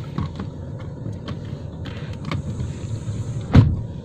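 Low, steady rumble of a car's engine and tyres heard from inside the cabin as the car creeps along, with a few light knocks and one sharp thump about three and a half seconds in.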